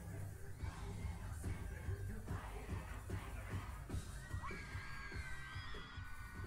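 Live pop concert audio from an audience recording: band music with a steady beat, a crowd cheering and screaming along, and long held vocal notes in the second half.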